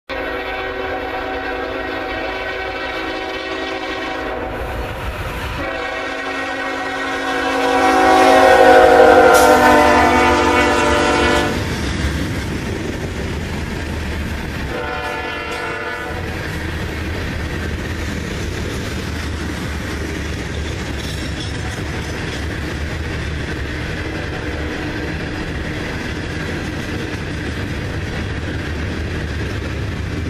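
A loaded coal train: the locomotive's multi-note air horn sounds long blasts as it approaches, growing loud and dropping in pitch as the engine passes about ten seconds in, with one short blast about fifteen seconds in. After that, the steady rumble and clickety-clack of loaded coal hopper cars rolling by.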